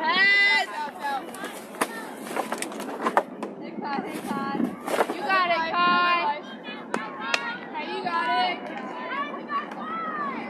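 High-pitched young voices shouting and chanting encouragement to a softball batter, coming and going in short bursts, with several sharp knocks in between, the strongest about five seconds in.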